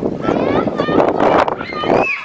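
High-pitched voices calling out loudly over a noisy background, without clear words.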